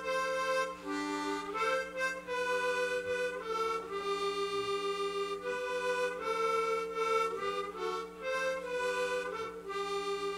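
Harmonica played solo into a microphone: a slow melody in chords, each note held about half a second to a second before moving to the next, with no breaks.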